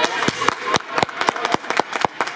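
A run of sharp handclaps, irregular and several a second, echoing in a large gym.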